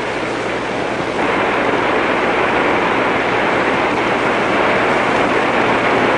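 Mountain stream cascading down over solid rock, a steady rush of falling water that grows a little louder about a second in.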